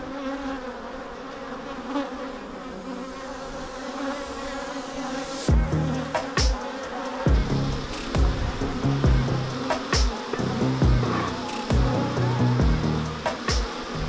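Honey bees buzzing around a hive entrance, a steady hum. About five seconds in, music with a thudding bass beat comes in over the buzzing.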